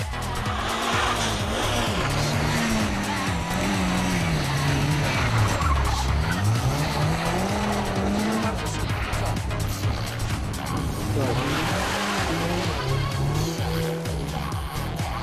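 A hatchback's engine revved hard under competition driving, its pitch climbing and dropping several times as the car slides through turns on loose dirt, with tyres scrabbling on the gravel.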